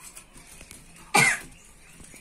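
A single short cough about a second in, much louder than the faint background.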